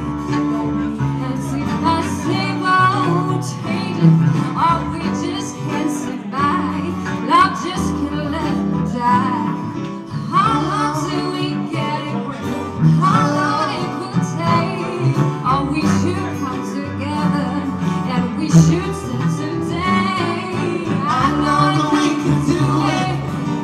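Live acoustic band: a woman singing into a microphone over acoustic guitar, with a bowed cello in the accompaniment.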